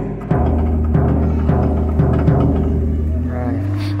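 Large drum with a clear head being struck repeatedly, about two to three hits a second, over a steady low drone.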